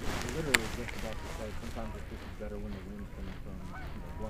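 A flock of geese honking, many short calls overlapping one after another. A sharp click comes about half a second in.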